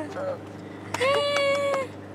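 A person's high-pitched voice holds one drawn-out note for just under a second, starting about a second in, over a steady low hum.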